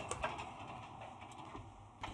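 A few faint metallic clicks and scrapes of a metal muffin tin being slid onto an oven's wire rack, mostly near the start, fading to quiet.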